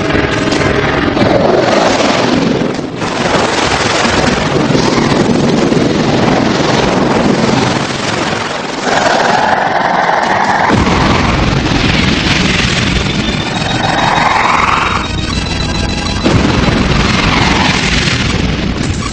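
Animated-cartoon action soundtrack: dramatic underscore music mixed with explosion and weapon-fire sound effects. It includes two rising swooshes, about halfway through and again near the end, and heavier rumbling booms from just past halfway.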